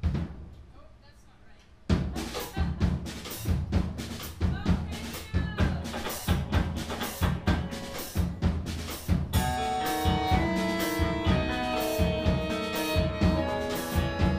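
Live band opening a song: a single drum hit, then a drum-kit beat from about two seconds in, with accordion, electric guitar and bass guitar joining in held chords at about nine seconds.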